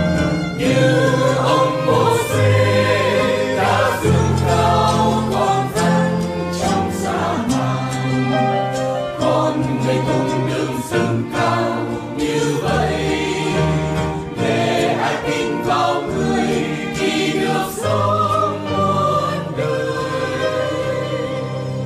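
Choral music: a choir singing a slow sacred song over sustained instrumental accompaniment, with the low notes changing every couple of seconds.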